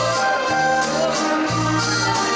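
A live dance band playing a waltz: a wavering melody held over bass notes that change about once a second.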